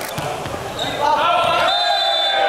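A volleyball slapped hard by the hand on a jump serve, a sharp crack right at the start, followed from about a second in by voices shouting in a large hall.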